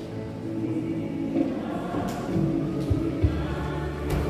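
Music: a choir singing gospel music, with long held notes over a steady bass.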